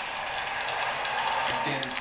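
Dog-show broadcast heard from a television: a steady noisy background between the commentator's lines, with a man's voice coming back in near the end.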